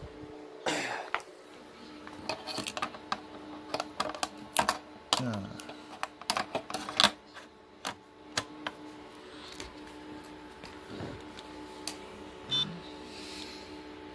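Clicks and knocks of a 2.5-inch hard drive in its metal caddy being handled and slid into the front drive bay of an HP BL460 G6 blade server, over the steady hum of the running server.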